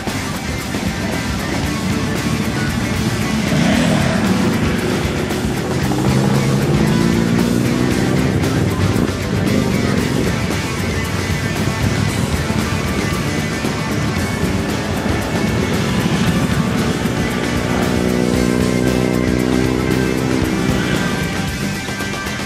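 A group of sport motorcycles riding past one after another, their engines rising in pitch as they accelerate away, twice swelling over background music.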